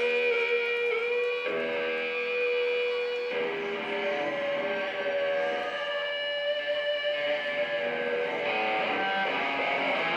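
Live rock band starting up with electric guitar playing long sustained chords that change a few times.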